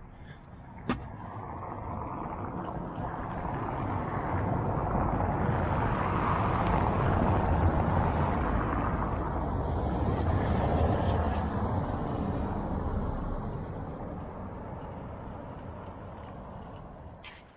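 Cars driving past on a cobbled road, their tyre and engine noise swelling over several seconds, holding, then fading away near the end. A sharp click about a second in.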